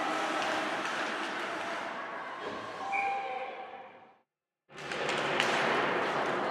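Ice hockey game sound in an echoing indoor rink: skates scraping the ice under a steady hiss, with a few sharp stick or puck knocks. The sound fades out just after four seconds into a brief gap of full silence, then comes back.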